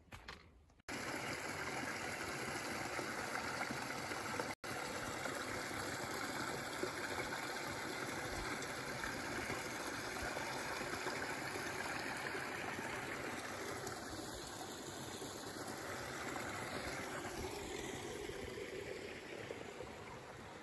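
A small rocky woodland brook flowing over and between boulders, a steady rush of water. It starts abruptly about a second in and briefly cuts out once near five seconds.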